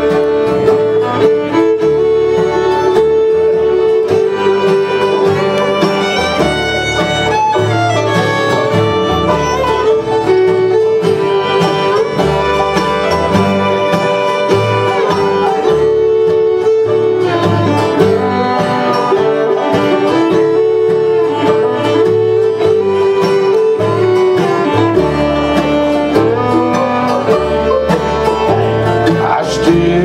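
Live bluegrass band playing an instrumental passage: bowed fiddle with long held notes over acoustic guitar, banjo and mandolin.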